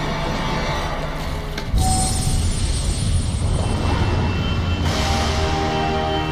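Soundtrack music from an animated episode: a low steady drone, a sudden loud deep hit about two seconds in, then held chords building toward the end.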